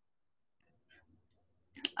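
Mostly near silence with gated call audio, then faint room noise and a tiny tick. A couple of soft clicks come near the end, just before a woman begins to speak.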